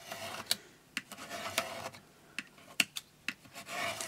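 Craft knife blade drawn along a ruler edge, scraping through a stack of paper pages on a cutting mat in short rasping strokes, with several sharp clicks between them.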